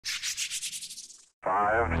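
Intro sound effect: a quick train of hissing pulses, about eight a second, fading away over about a second. After a short gap a low steady drone comes in under a countdown voice.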